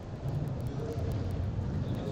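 Steady low rumble of background noise in an indoor five-a-side football hall.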